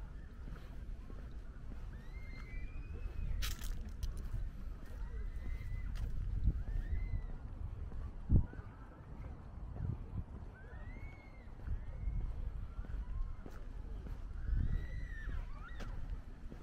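Birds calling repeatedly, with short upward-arching chirps over a steady low outdoor rumble. A sharp knock sounds about eight seconds in.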